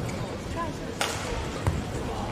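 Badminton rally: a racket strikes the shuttlecock sharply about a second in and again near the end. Shoes squeak briefly on the court, over a steady murmur of voices in the hall.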